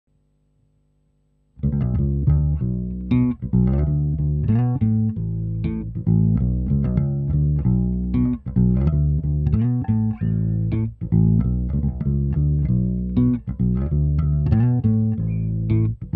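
Gretsch hollow-body electric bass played finger-style: a continuous melodic bass line of plucked notes, starting about a second and a half in.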